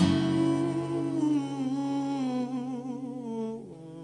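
A man humming a wordless, wavering melody that slowly falls in pitch, over a sustained acoustic guitar chord. It fades out near the end as the song closes.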